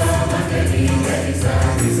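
Mixed choir of men and women singing a Malayalam Christian song in Mayamalavagowla raga, holding sustained notes over a steady low bass line.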